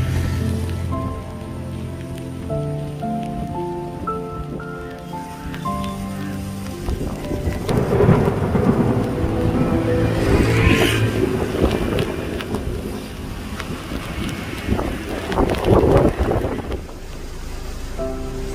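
Background music with slow held notes for the first several seconds, then heavy rain pouring onto a flooded paddy field, with deep rumbling surges swelling about 8, 10 and 16 seconds in.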